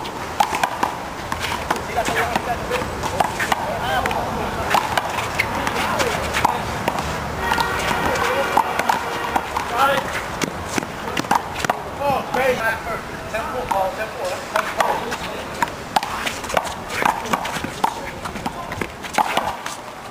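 A one-wall handball rally: a rubber ball is slapped by hand and smacks off the concrete wall and court again and again in sharp cracks. Players' voices and shouts come in between the hits, thickest in the middle of the rally.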